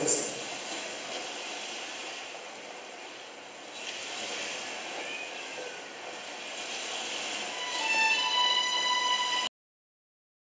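Documentary film soundtrack played over the hall's speakers: a steady noisy background, then music with long held notes comes in near the end, and the sound cuts off abruptly into silence.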